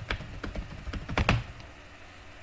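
Computer keyboard keys being typed as a password is entered: about half a dozen separate key clicks, the loudest pair a little past the middle.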